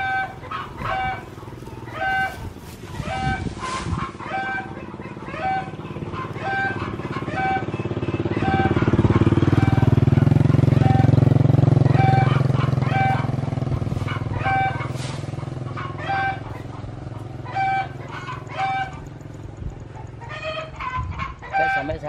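A motorbike passes, its engine growing louder and then fading over several seconds. Under it, a short high call or beep repeats steadily about every half second.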